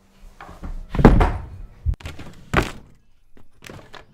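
A few dull thuds and knocks: a heavy one about a second in, then three smaller, sharper ones spread through the rest.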